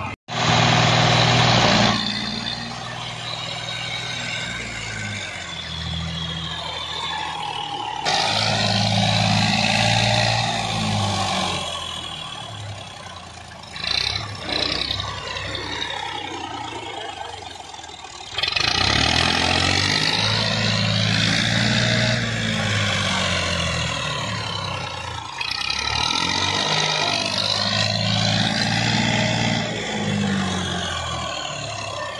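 Diesel farm tractor engine working hard under load, its pitch rising and falling as it is revved while dragging a trolley-load of cotton sticks off onto the ground. The sound jumps abruptly at several edits.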